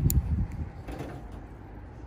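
Ford Transit Mk7 central locking clunking as it is locked from the key fob: a short sharp click right at the start and a fainter one about a second in. The locks now work after the rear-door wiring repair.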